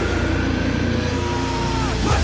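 Heavy metal music in a sparser break: one held note bends downward near the end over a steady low rumble, before the full band comes back in.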